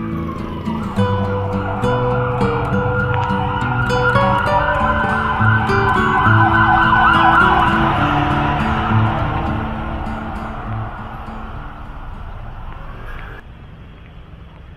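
Background music over a warbling, siren-like wail that grows louder to about halfway through, then fades away near the end, like an emergency-vehicle siren passing in traffic.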